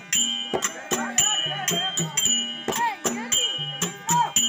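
Mridangam played in a quick rhythm of sharp strokes, several of them ringing briefly with a clear pitch.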